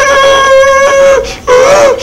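A man imitating a mosquito's buzz with his voice: a steady hum held for about a second, a short break, then a shorter hum that swoops up and back down in pitch.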